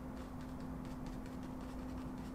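Faint, irregular light ticks of a paintbrush tapping acrylic paint onto canvas, over a steady low electrical hum.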